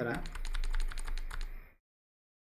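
Fast typing on a computer keyboard: a quick run of keystrokes, several a second, lasting about a second and a half and then stopping.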